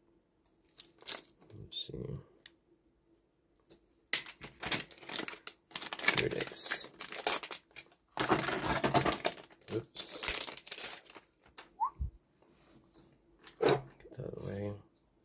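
Small clear plastic zip bags being handled, crinkling in long stretches of rustle with a few light clicks.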